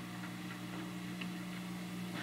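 Low, steady electrical hum with faint hiss: the background of an old recording, with no other sound.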